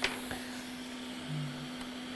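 Hot air rework station's blower running: an even airy hiss over a steady low hum, with a small click right at the start.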